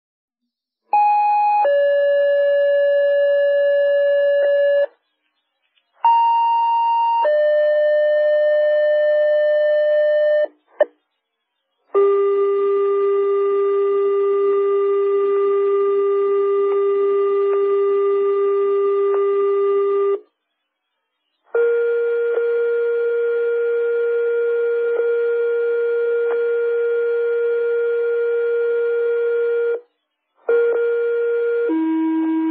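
Two-tone sequential pager alert tones sent over a fire dispatch radio channel to alert stations. Twice, a short higher tone is followed by a longer lower one. After a click come two long single tones of about eight seconds each, the second slightly higher, with a light radio hiss under them.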